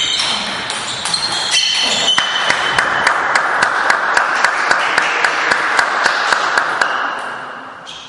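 Sports shoes squeaking in short high chirps on the hall's court floor during a table tennis rally, for the first two seconds. Then a steady hiss with a run of evenly spaced sharp taps, about four a second, which fades out near the end.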